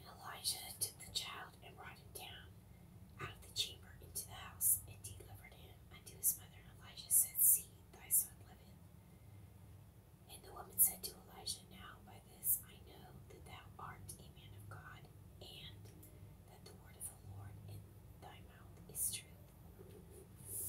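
Soft, close whispering of someone reading aloud, in short phrases with pauses, the s sounds crisp and hissing.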